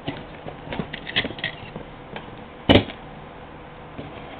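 Handling noise from an HEI distributor being held and moved by hand: scattered light clicks and rustles, with one louder knock a little past halfway.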